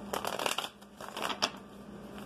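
A deck of tarot cards being shuffled by hand, the cards rustling and slapping against each other in two short spells, one at the start and one about halfway through.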